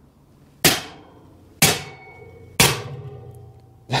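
Three hammer blows about a second apart on a welded steel plate clamped in a vice, each followed by a short metallic ring as the plate bends over. This is a hammer test of the weld, which holds while the plate bends.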